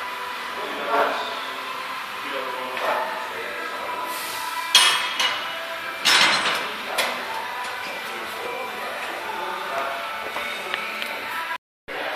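Metal clinks and knocks from a barbell loaded with iron plates during heavy back squats, with two sharp ones about a second and a half apart, over gym chatter.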